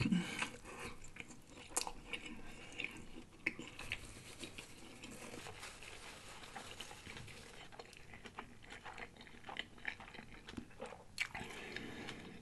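A person chewing a mouthful of crispy fried corned beef egg roll close to the microphone: scattered small crunches and wet mouth clicks, with a few louder crunches.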